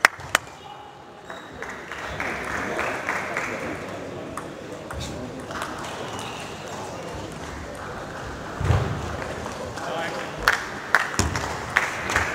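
Table tennis ball clicking sharply off bats and table: a single hit right at the start, then a pause between points filled with voices in the hall, then a quickening run of hits near the end as the next rally starts.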